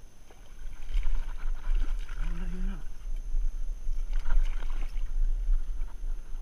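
Shallow river water sloshing and splashing as a musky is waded out and lowered into the water by hand for release, over a low rumble on the microphone. A brief human vocal sound, like a grunt, comes about two seconds in.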